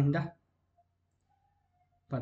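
A short spoken syllable at the start, then near silence broken by one faint computer mouse click just under a second in.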